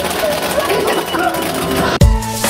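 Busy amusement-arcade din: a light-gun zombie shooting game being played, its sound effects and music mixed with the noise of other machines and voices.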